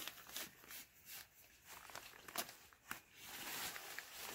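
Faint rustling of a pop-up canopy's fabric side wall and mesh netting being handled and fitted around a leg, with a few light clicks and a longer swell of rustling near the end.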